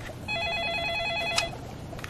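Electronic telephone ringer sounding one ring of about a second: a fast warbling trill between two close pitches, heard as the dialled call rings through before it is answered.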